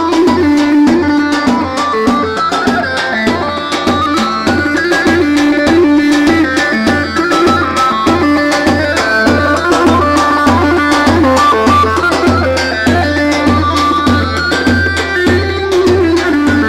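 Live Kurdish wedding band playing halay dance music: a steady drum beat at about two beats a second under a fast, stepping melody.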